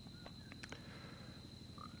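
Faint animal calls: a few short chirps, one near the end, over a steady high-pitched tone and a low hum.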